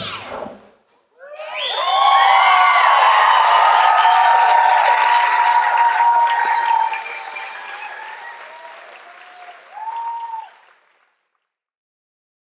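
Audience applause and cheering with high whoops, starting about a second in after the music stops. It is loudest for about five seconds, then dies down, with one last whoop near the end before it cuts off.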